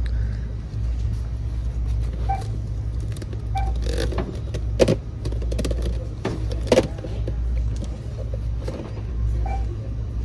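Hard plastic storage bins knocking together as one is pulled out of a stacked pile on a store shelf, two sharp clacks about two seconds apart over a steady low rumble.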